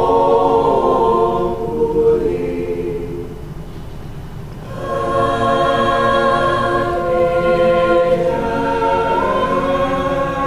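Mixed-voice school choir singing a cappella in long held chords. The sound tapers off to a soft passage about two seconds in, and the full choir comes back in strongly about five seconds in.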